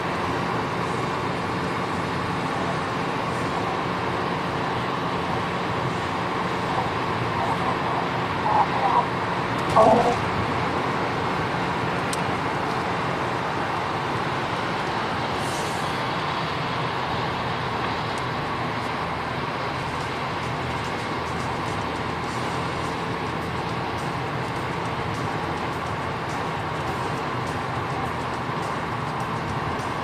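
Steady tyre, wind and engine noise inside a 1996 Mercury Mystique's cabin while it cruises at highway speed. A few short, louder sounds come about eight to ten seconds in.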